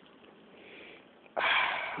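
A person's sudden noisy breath through the nose, close to the microphone, about a second and a half in, after a faint steady hiss.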